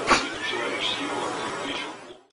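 A cat meowing, with a sharp knock just after the start; the sound fades out near the end.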